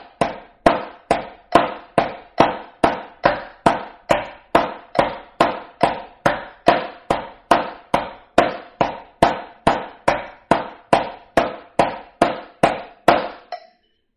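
Snare drum struck with wooden drumsticks in steady, even eighth notes, about two strokes a second, each with a short ring: a slow hand-to-hand stick control exercise. The strokes stop just before the end.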